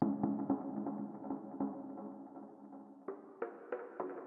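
A melodic sample loop in F minor playing back: a run of short pitched notes over sustained tones. It fades down, then new notes strike about three seconds in.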